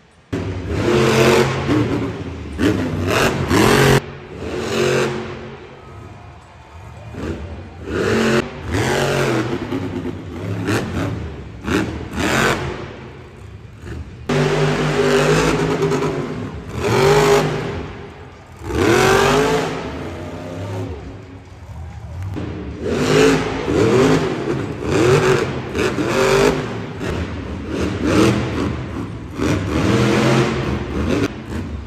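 Monster truck supercharged V8 engines revving hard, the pitch surging up and falling away again and again, as several runs are cut together with sudden jumps in level.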